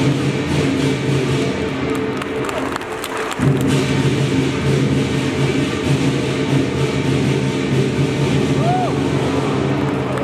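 Lion dance percussion band playing: a large drum beaten with gongs and cymbals clashing over it in a continuous rhythm. The playing dips briefly about three seconds in and then comes back louder.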